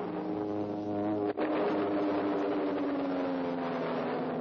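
Cartoon sound effect of a speeding bullet-shaped rocket car: a steady pitched engine drone. It drops out for an instant about a second and a half in, then comes back with its pitch slowly sinking.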